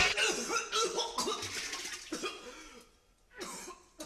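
A man coughing and making throaty vocal noises as the last chord of a punk rock song dies away, the sounds getting quieter, then a brief gap and one more short cough near the end.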